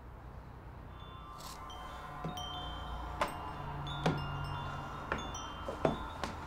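Light metallic chiming: small tinkling strikes about once a second, each leaving a high note ringing on, so that several notes overlap. A low steady hum lies beneath.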